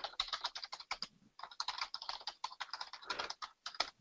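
Typing on a computer keyboard: a quick, irregular run of key clicks, with a brief pause about a second in.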